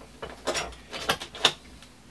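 Metal clogging taps on shoes clicking against a plywood floor: about half a dozen loose, uneven taps as the feet shift, not a full step pattern.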